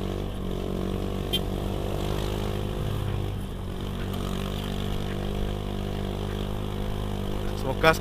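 Honda Beat Street scooter's small single-cylinder engine running at a steady pull as it climbs a steep hill road.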